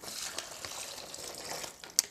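Chicken stock pouring from a glass jar into a plastic bag of beans, corn and chicken: a steady stream of liquid splashing in, stopping just before the end.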